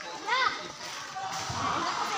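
Voices of swimmers playing in a pool: a loud high-pitched shout about a third of a second in, then several voices calling over one another.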